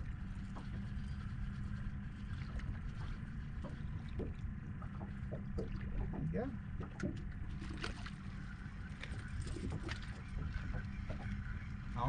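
Water lapping against the hull of a small fishing boat, over a steady low rumble, with faint low voices near the middle.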